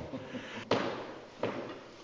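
Two sharp knocks, about three-quarters of a second apart, from an instrument case and its gear being handled.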